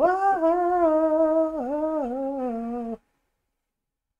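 A man singing one long held note on an open vowel, imitating a belted vocal line; the pitch dips slightly about halfway through and the note stops about three seconds in.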